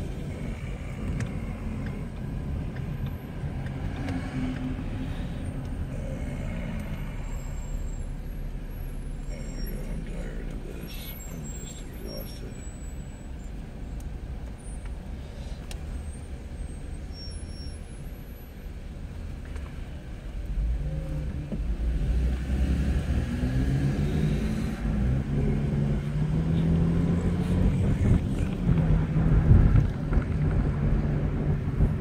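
Car engine and road noise heard inside the cabin: a steady low rumble in slow traffic that grows louder about two-thirds of the way through as the car picks up speed.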